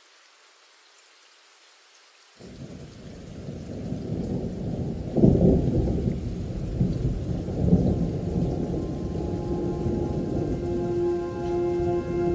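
Thunderstorm: a steady rush of rain with low rolls of thunder, cutting in suddenly about two seconds in and swelling, with the strongest thunder rolls around the middle. Near the end, sustained horn-like musical tones come in over it.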